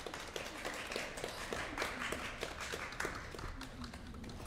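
A small group of people applauding, a fairly quiet patter of many quick, uneven hand claps.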